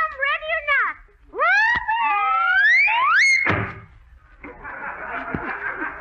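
Radio comedy sound effects: short pitched cries, then long shrill rising whoops, ending in a sudden crash about three and a half seconds in. The studio audience then laughs and applauds.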